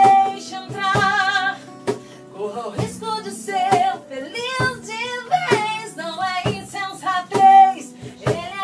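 A woman singing a gospel song live over sustained keyboard chords, with held, wavering notes that climb and grow loudest near the end.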